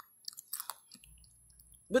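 A few faint mouth clicks and smacks from a person pausing between words, then a low hum that comes in about halfway through.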